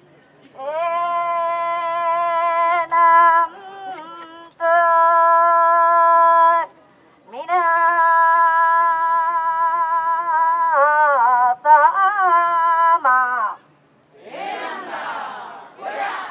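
A woman singing kiyari, the traditional long-drawn festival work chant, through a hand-held megaphone: two long phrases of held notes that waver and bend downward at their ends, with a short pause between them. Near the end comes a brief burst of noise before the singing starts again.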